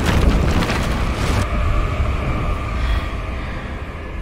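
Tail of a film explosion: a loud rushing blast of wind and debris over a deep rumble. The hiss cuts off about a second and a half in, leaving the low rumble to fade away.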